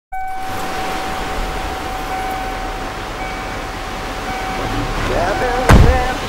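Radio-style soundtrack intro: a steady high whine over static-like hiss, then brief wavering snatches of voice and one loud sharp thump just before the end.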